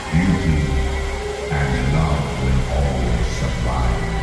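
Ominous show music played over a large outdoor sound system, with a deep, low voice sounding over it in wavering phrases and a long held note underneath.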